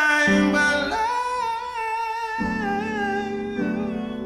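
Wordless singing of long held notes with vibrato over a soft piano and guitar ballad accompaniment; the voice slides up about a second in and holds, then eases lower.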